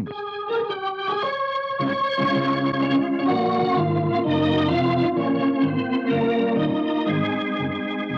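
Romantic organ music: a short bridge that opens with a thin melody line and swells into full held chords with a bass about two seconds in, easing off near the end.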